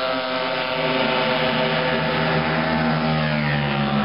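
Motorcycle engines running hard on a race track, several overlapping engine notes sliding slowly down in pitch, with another note rising near the end.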